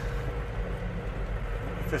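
A van's engine and road noise heard from inside the cab while driving: a steady low rumble.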